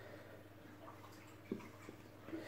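Mostly near silence with a faint steady hum, then a soft knock about one and a half seconds in and a smaller one just before the end: plastic cups being set down on a cloth-covered table.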